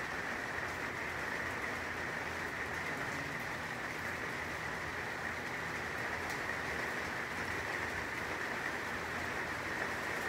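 Steady hiss of rain falling, with a faint steady high-pitched tone running through it.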